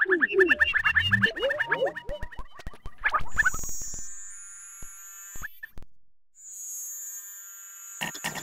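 Experimental electronic music: a busy run of quick falling chirps and clicks, then, about three and a half seconds in, it thins to quieter high held synthesizer tones with a few sparse clicks.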